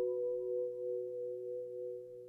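A soft, bell-like chord held on a musical instrument, slowly fading with a slight wavering in its tones.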